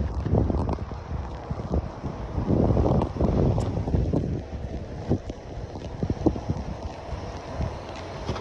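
Wind buffeting a phone's microphone outdoors: low rumbling gusts, the strongest about halfway through, with a few short knocks.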